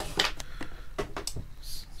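Light handling sounds of a power cord and plug on a plastic power-converter box: a handful of short clicks and a brief rustle near the end.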